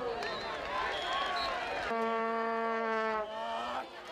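Crowd chatter at a football game, then about halfway in a single steady low horn blast of about a second and a half, rich in overtones, that tails off near the end.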